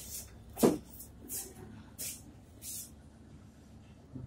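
A single sharp knock about half a second in, followed by three short rustling scrapes, then it goes quiet.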